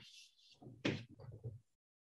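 Chalk writing on a blackboard: a few short taps and scrapes, the loudest a sharp knock just under a second in.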